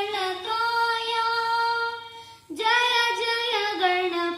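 A boy singing a devotional song, holding a long note, then breaking off briefly just past the middle before going on. A small toy electronic keyboard accompanies him.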